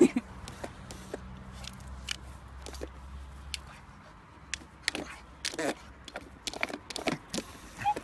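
A dog mouthing and biting at a plastic paw-pressed dog water fountain, making scattered short clicks and knocks of teeth and nose on the plastic.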